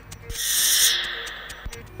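A swooshing transition sound effect, a noisy whoosh that swells and fades over about a second, with faint steady tones beneath it.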